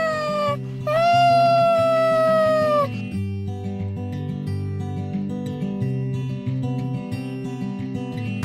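A cat meowing twice in long drawn-out calls, each sliding down in pitch, the second lasting about two seconds. Background music with guitar follows from about three seconds in.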